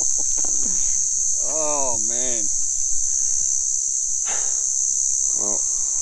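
Cicadas buzzing in a steady, high-pitched, unbroken drone.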